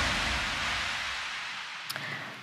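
A hiss-like wash of noise fading steadily away: the tail of a hip-hop intro jingle after its final hit. A short click comes near the end.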